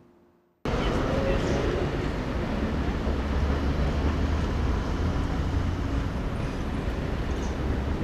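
Outdoor city ambience: steady traffic noise with a strong low rumble, starting abruptly less than a second in.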